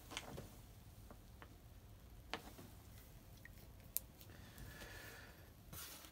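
Near silence, with a few faint sharp clicks and light rustling from trading cards being handled on a table.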